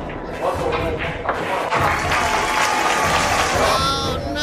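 Onlookers clapping for a good shot, the clapping thickening partway through, mixed with voices.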